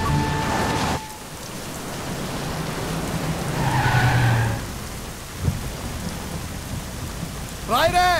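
Heavy rain pouring steadily, with a low roll of thunder swelling about four seconds in. A film's background music cuts off about a second in, and a man's voice cries out near the end.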